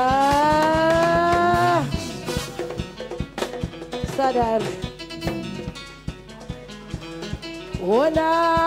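Live band music with singing: a long held vocal note that rises slightly and breaks off about two seconds in, over a steady drum beat, then a sliding vocal line and a rising glide into another held note near the end.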